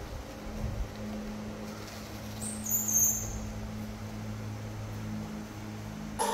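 Steady low electrical hum, with one brief, very high-pitched squeak a little before the middle.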